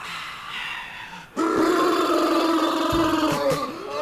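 TV commercial soundtrack playing back: a soft background hush, then about a second and a half in, loud music comes in with long held notes, and low beats join near the end.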